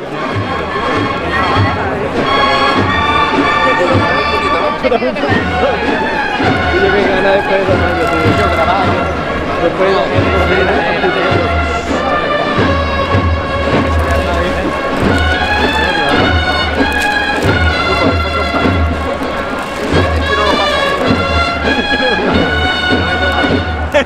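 Cornet-and-drum procession band playing a march: held brass notes in bright, stacked chords over a steady bass-drum beat.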